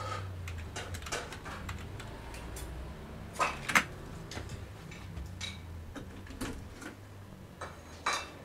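Scattered, irregular clicks of laptop keys being typed on over a low steady hum, with a couple of louder clicks about three and a half seconds in.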